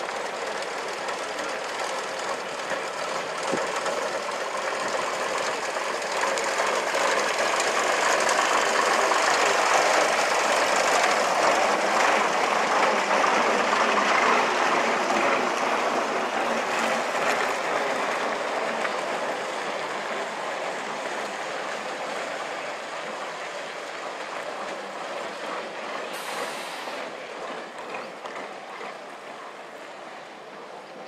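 A train passing on the nearby railway: a steady rolling noise that grows louder, peaks about midway, and fades away toward the end.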